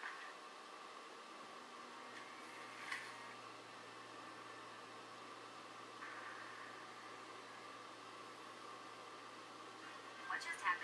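Faint, steady whoosh of the Aaxa M1 Ultimate-X projector's internal cooling fan, with a low hum coming in a couple of seconds in and a single faint tick about three seconds in.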